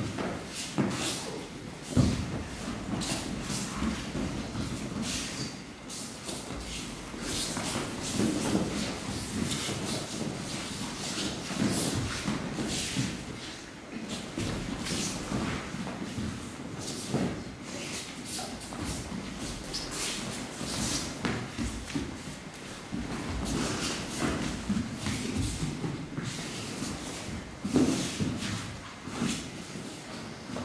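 Bare feet shuffling and stepping on tatami mats, with uniforms rustling and irregular thuds of bodies landing and rolling on the mats. The loudest thuds come about two seconds in and again near the end.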